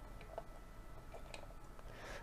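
Faint light clicks of a die-cast scale model car being handled in the fingers: two small ticks over quiet room tone.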